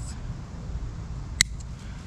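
Small hand snips cutting a woody thyme stalk: one sharp metallic snip about one and a half seconds in, over a low steady background rumble.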